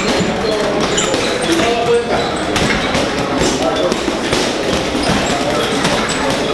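Busy boxing gym: a steady, rapid run of gloved punches landing on bags, with voices in the background.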